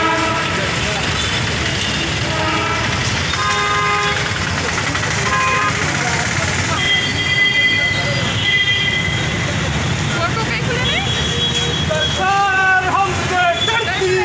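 Street traffic with several vehicle horns sounding in turn, each a held steady note of a second or so, over a constant low traffic noise. Near the end, raised voices of a crowd shouting come in.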